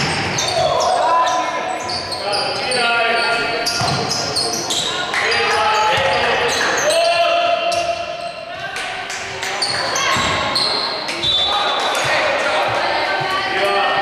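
A basketball bouncing on a hardwood gym floor as it is dribbled during play, with players' voices calling out, in a reverberant sports hall.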